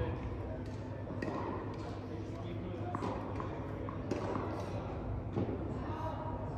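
Tennis balls bouncing on the court and being struck by rackets in a large indoor tennis hall: a scattered series of short, sharp knocks, with indistinct voices in the background.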